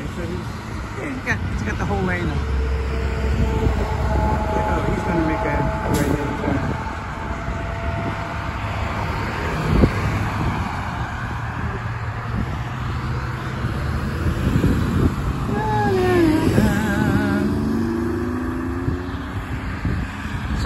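Road traffic: cars driving past on a multi-lane road, a steady rush of tyres and engines that rises and falls as vehicles go by, with a sharp knock about ten seconds in.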